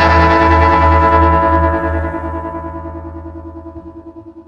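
Rock music ending on one long held chord of electric instruments that pulses rapidly and steadily, then fades away from about two seconds in.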